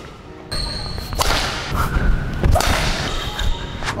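Whooshing swish of a badminton racket swung through the air, starting about half a second in and running on as a long rushing noise.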